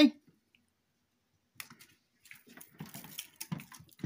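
Kitten playing with a small rattle toy mouse: scattered light clicks and rattles, starting about a second and a half in.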